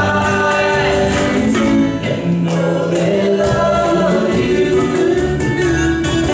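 A live band playing: several voices singing together in unison over guitars, bass and percussion.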